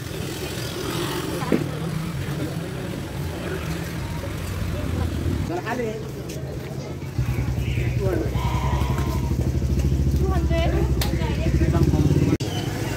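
Busy street-market ambience: scattered voices of people talking, with a motor vehicle's engine running close by. The engine gets louder about seven seconds in.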